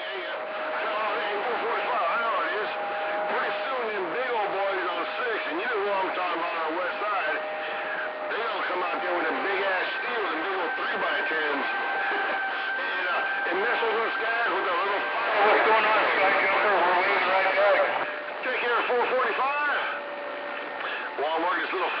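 CB radio receiver on a crowded channel: several stations transmitting over one another in garbled, warbling voices, with steady whistle tones of different pitches from carriers beating against each other. A high whistle holds for several seconds near the middle, and the loudest stretch comes a little after it.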